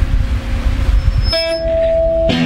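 Low rumbling room and amplifier noise, then about a second and a third in an electric guitar sounds one steady held tone through its amp just before the song starts.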